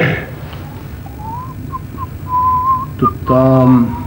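A person whistling a short, wavering tune in a few separate notes, cut off near the end by a brief voice.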